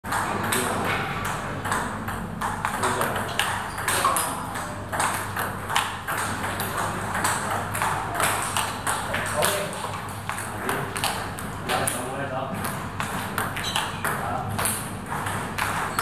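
Table tennis balls clicking in quick succession in a multiball drill. The balls are fed, bounce on the table and are struck back with reverse penhold backhand strokes, making a steady run of sharp ball-on-table and ball-on-paddle clicks.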